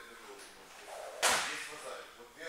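A single sharp smack about a second in, fading briefly in the hall's echo, with faint voices behind it.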